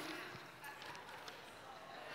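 Faint rustling and crackling of a folded paper road map being unfolded by hand.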